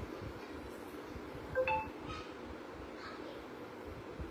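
A short, bright chime of a few clear ringing tones about one and a half seconds in, with a couple of fainter tinkles after it, over a steady low background hum.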